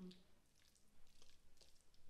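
Faint soft squishing and light scraping as a spatula pushes diced vegetable salad out of a glass bowl into a baking dish, with a few small ticks of the spatula on the glass.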